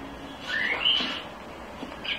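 Animated film soundtrack playing through a TV's speakers: a cartoon bird gives one rising whistled chirp, about a second long.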